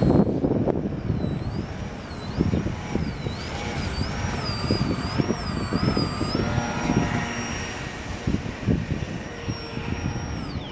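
Electric motor and propeller of a small RC model plane, a high thin whine that swoops up and down in pitch as the throttle and the plane's passes change. Gusts of wind buffet the microphone underneath.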